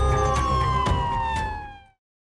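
Sound-design sting closing a TV crime show's title card: a pitched tone gliding steadily down over a low rumble, fading out just before the end.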